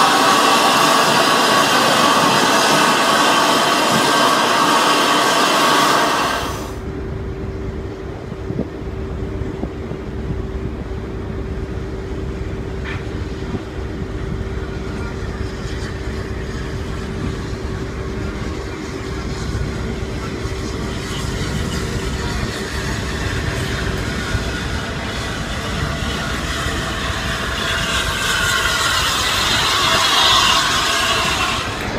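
Steam locomotive Flying Scotsman, an LNER A3, standing at a platform with steam hissing loudly and evenly. About six seconds in, this cuts to the low, steady rumble of the locomotive moving slowly through a station, with a steady hum over it for a while. The rumble grows louder near the end as the engine draws close.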